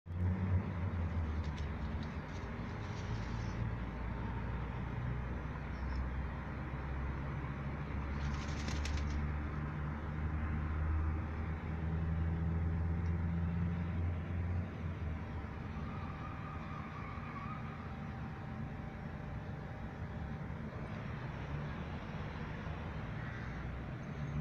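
Rook's wings flapping and feathers rustling in short bursts, the loudest about eight seconds in, over a steady low rumble of city traffic.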